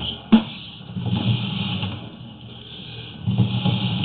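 Sewer inspection camera's push cable being pulled back out of the line, with irregular rattling and handling noise and one sharp click about a third of a second in.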